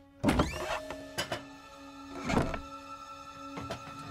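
Animated-film soundtrack: soft music with steady held notes, broken by a loud sweeping burst just after the start, a few short knocks and a swelling sound effect about two seconds in.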